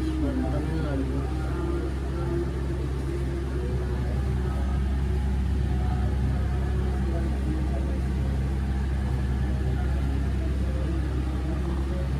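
A steady low hum that does not change, with faint voices in the background.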